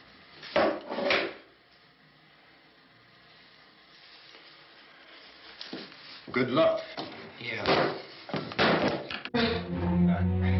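Scattered knocks and handling noises, with a quiet stretch in the middle; film score music comes in near the end.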